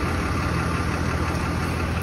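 Tow truck's engine idling close by, a steady low running sound.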